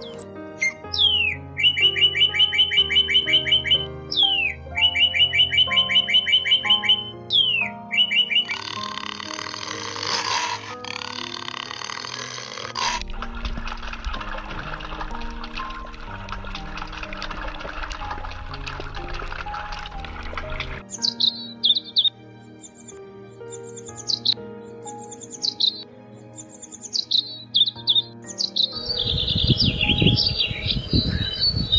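Northern cardinal singing over background music: a sharp falling whistle leads into a fast, even trill, three times over in the first eight seconds. Then comes a long stretch of rushing noise, and from about twenty seconds in a run of short, high, falling bird chirps.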